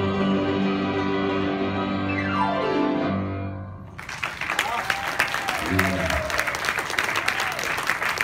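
Piano and violin holding a final sustained chord, with a falling run of notes near its end. About four seconds in the music stops and the audience breaks into applause, with a few voices among it.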